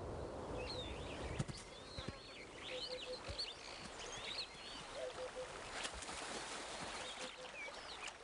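Outdoor natural ambience: birds chirping with short, quick calls over a steady hiss, with a short low pulsed call now and then and a few sharp clicks.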